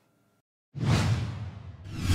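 Two whoosh sound effects for a logo transition. The first starts suddenly about three quarters of a second in and fades out. The second starts just before the end. Both have a deep low rumble underneath.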